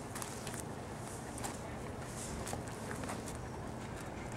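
Footsteps of a person and a dog walking on wood-chip mulch, light irregular crunches over steady outdoor background noise.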